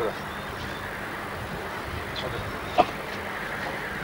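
Steady hiss and background noise of an old 1990s camcorder recording outdoors, with one short sharp sound about three seconds in.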